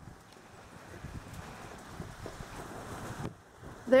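Wind buffeting the camera microphone, a steady rumbling noise with a few faint knocks; the wind noise stops abruptly a little over three seconds in.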